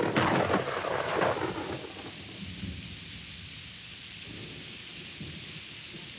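Thunder rumbling loudly and fading away over the first couple of seconds, then steady heavy rain hissing.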